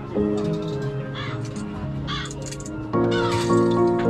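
Crows cawing several times, about a second apart, over a background music track with steady sustained notes that swells near the end.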